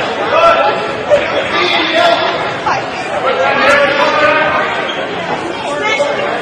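Overlapping voices of onlookers in a gymnasium, talking and calling out at once during a wrestling bout.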